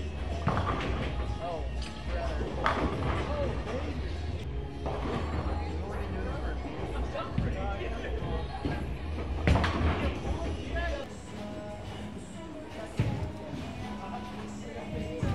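Bowling balls thrown down the lane, each landing, rolling and then crashing into the pins, twice. The second pin crash, about nine and a half seconds in, is the loudest. Under it runs background music and voices.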